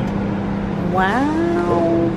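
Menumaster commercial microwave oven running with a steady low hum that strengthens just as it starts heating. About a second in, a voice rises in pitch over it and holds a long drawn-out note.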